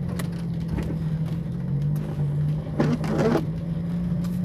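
Car engine idling, heard from inside the cabin as a steady low hum, with a few faint clicks and a brief louder rustle about three seconds in.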